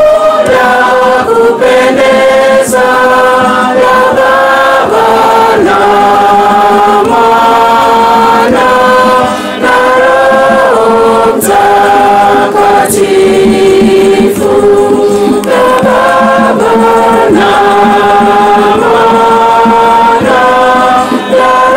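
Choir singing an offertory hymn in Swahili in harmony, moving through long held chords, with a few sharp percussive clicks.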